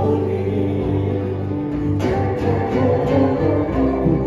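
Live band playing an Indonesian folk song: a man and a woman singing together over acoustic guitar, bass guitar and drums, with a sharp accent about halfway through.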